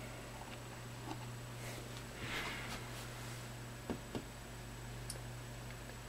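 Quiet room tone with a steady low hum, a soft rustle and a few small clicks as a jumper is pushed back onto a header on the clock's circuit board by hand.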